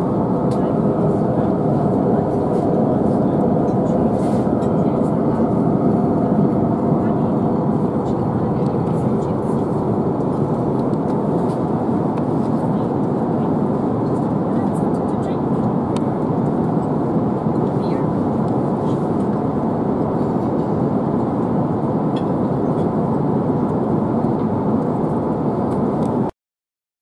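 Steady cabin noise of an Airbus A350-900 in flight: an even rumble of engines and airflow, with a few faint clicks over it.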